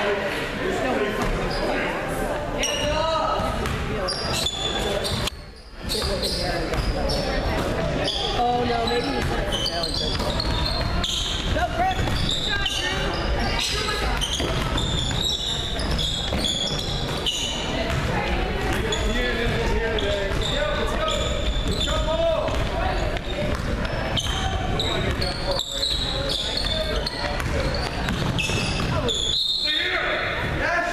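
Basketball game in an echoing gym: a ball bouncing on the hardwood court, with indistinct voices of players and spectators throughout.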